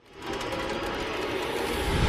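Intro sound effect: a rushing whoosh that fades in quickly, then builds slowly, gaining low end.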